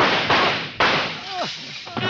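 Three gunshots in quick succession, a radio-drama sound effect, each a sharp crack that trails off. A man cries out briefly after the last shot.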